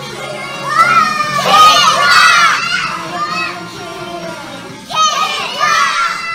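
A group of children shouting and cheering together in two bouts, about a second in and again near the end, over background music.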